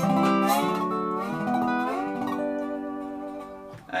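Square-neck Dobro resonator guitar played lap style with a steel bar: a short phrase of picked notes that slide up between pitches and ring, dying away near the end.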